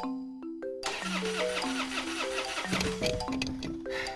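Light melodic background music, with a car's starter cranking the engine over and over from about a second in, without the engine catching.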